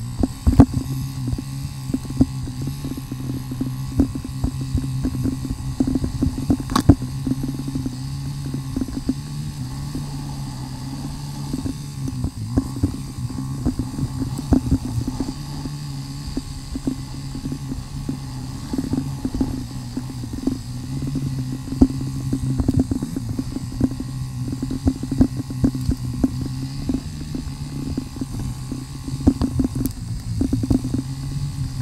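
KTM Freeride 350's single-cylinder four-stroke engine running at low revs, its pitch rising and falling a little with the throttle, with frequent knocks and rattles as the bike jolts over rough, root-strewn ground, including one sharp click about seven seconds in.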